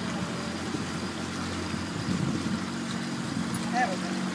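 Motorboat engine running steadily under way: a low, even hum under a steady rush of wind and water.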